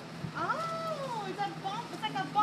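A high-pitched voice drawing out one long vowel that rises quickly and then slides slowly down, followed by a few short syllables near the end.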